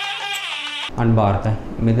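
A short musical jingle with a wavering, voice-like melody breaks off suddenly about a second in. A man then starts speaking.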